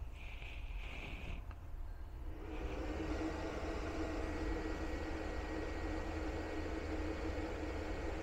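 Power inverter switched back on: a short high beep, a click, then its cooling fan and hum start about two seconds in and run steadily.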